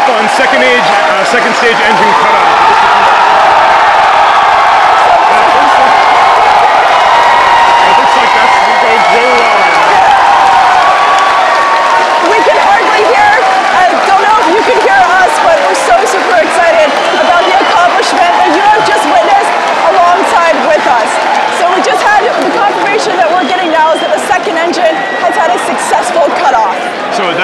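A large crowd cheering and whooping without pause, with clapping breaking through in the second half.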